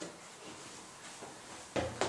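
A few dull knocks, the loudest a low thump near the end.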